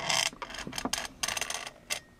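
Desk lamp being repositioned by hand: a short rustle at the start, then a run of small irregular clicks and rattles from its jointed arm.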